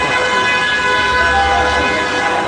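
A horn sounding one long, steady note without a break, over crowd and street noise.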